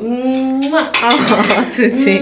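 A woman's voice cooing in long held tones, with dishes and cutlery clinking.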